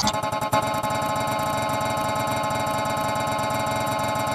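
A steady, buzzy electronic drone of several held tones with a fast flutter, at an even level throughout. It is a distorted edit of a logo jingle's sound.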